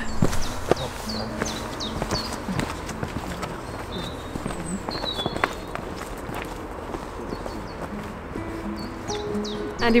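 Footsteps on a dirt woodland path, close and sharp in the first second or two, then fading as the walkers move away. Short bird chirps and soft background music with held notes run underneath.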